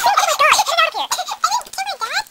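A child's high-pitched, warbling vocalising: a rapid string of short rising-and-falling squeals with no words.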